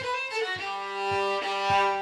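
Background music led by a violin playing held notes over a soft, steady low beat about twice a second.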